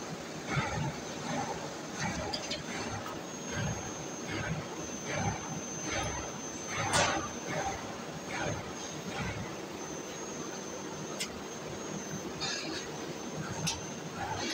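Sheet metal and cut parts clinking and knocking on a fiber laser cutter's slatted bed as they are handled, over a steady hum of workshop machinery. A thin high whine runs for a few seconds in the middle, and the loudest clatter comes about seven seconds in.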